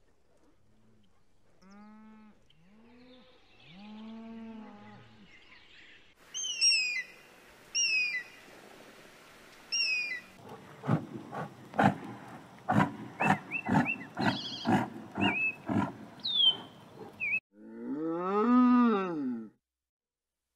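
A run of animal calls. First come faint low cattle moos. Then a bird of prey gives three sharp, high, falling screams about a second and a half apart, followed by a rapid series of rough calls with a few high chirps. Near the end a cow gives one loud, long moo that rises and falls.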